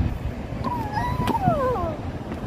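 A child's high-pitched, wordless vocal sound: a note held near the top of her voice that wavers, then slides down over about a second. It sits over low rumbling handling and wind noise from the phone being passed.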